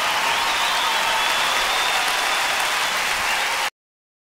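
Large concert audience applauding steadily at the end of a live song, cut off abruptly near the end where the recording stops.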